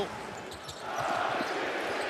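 Basketball arena crowd noise, growing louder about a second in, with the low thuds of a basketball being dribbled on the court.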